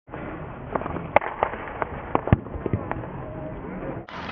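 Field hockey sticks striking balls: a run of sharp cracks and knocks, loudest a little over a second in and again just past two seconds, with voices in the background.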